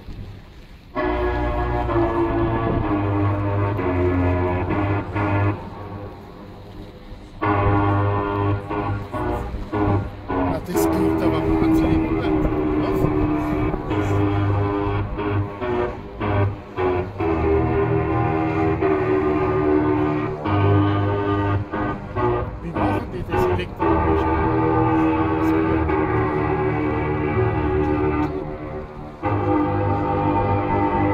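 A cruise ship's multi-tone musical horn playing a tune in long, held, chord-like notes, with short pauses about a second in and around six to seven seconds in.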